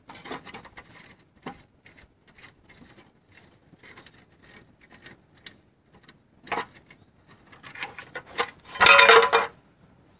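Rusty steel gearbox crossmember being worked loose from a truck frame: scattered small scrapes and clicks of metal, a sharper knock a little past the middle, then a loud metallic clatter with brief ringing near the end as the crossmember drops to the ground.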